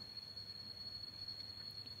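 Faint, steady, high-pitched insect song, one unbroken tone over a quiet background hiss.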